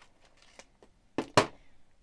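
Scissors cutting the top off a plastic LEGO minifigure blind bag: faint rustling of the bag, then two sharp snips a little over a second in, the second louder.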